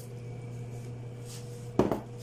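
Steady low background hum, with one short knock near the end, likely something set down on the kitchen counter or against the blender jar.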